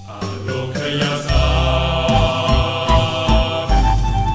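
Title music: sustained, chant-like tones over a deep bass that comes in about a second in.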